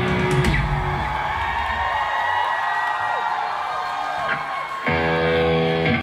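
Live rock band with electric guitars closing a song: after a loud first second the band thins to ringing guitar with sliding notes, then about five seconds in a final chord is struck by the full band and held.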